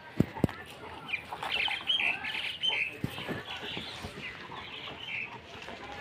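Two sharp knocks right at the start, then about two seconds of high, choppy squawking chirps typical of bird calls, followed by a few soft knocks.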